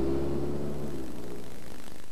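A low, steady droning tone, the held end of a commercial's soundtrack, dies away over the first second or so, leaving a low, even hum.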